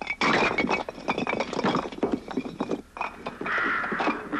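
Loose old bricks being worked out of a bricked-up doorway: a quick run of scrapes, knocks and clinks of brick against brick and falling rubble.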